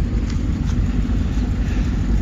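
1985 Maserati Quattroporte's 4.9-litre quad-cam V8 on four Weber carburettors idling with a steady low drone.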